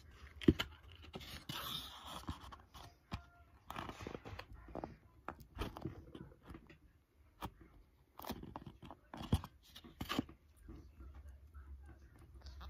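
Soft macaroon clay being squeezed, pulled apart and pressed by hand, giving irregular bursts of crackling and crunchy tearing. A sharp click about half a second in is the loudest sound.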